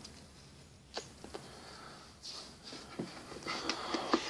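Faint handling sounds: a few light clicks about a second in, then soft rustling and small knocks near the end as hands take hold of a stainless steel cup's lid and cord tie.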